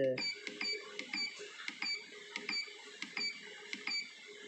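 Keypad of an Essae SI-810PR receipt-printing weighing scale beeping: a short electronic beep with each press of the Down key, about two or three a second, as the settings menu is scrolled item by item.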